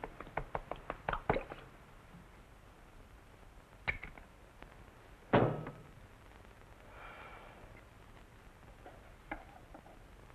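Knives and forks clinking and tapping on china plates during a meal: a quick run of small clicks over the first second and a half, then a few separate clinks and knocks, the loudest a heavy knock with a short ring a little past five seconds in.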